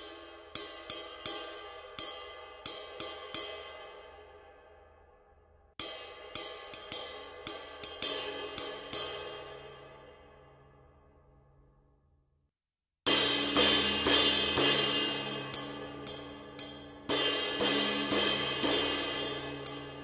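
A 22-inch Sabian AAX Muse ride cymbal played with a drumstick in a ride pattern, each run of strokes ringing on and dying away, twice. After a short silence it is played much louder with a dense wash of ring, and it jumps louder again near the end.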